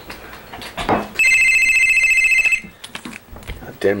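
Telephone ringing: a single loud electronic ring lasting about a second and a half, starting about a second in and stopping suddenly. A brief sound comes just before it.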